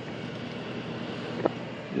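A steady, even rushing noise with one short faint click about one and a half seconds in.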